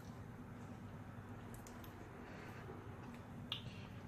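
Quiet room tone with a few faint, short clicks; one slightly sharper click comes near the end.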